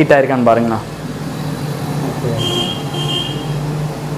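A man's voice for the first second, then a steady low background hum, with a short high-pitched double tone about halfway through.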